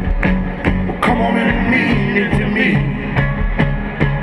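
A live rock-and-soul band playing, heard from the audience: drums keep a steady beat under bass, guitar and a saxophone.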